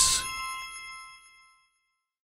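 A bright chime struck once, several tones ringing together and fading out within about a second and a half.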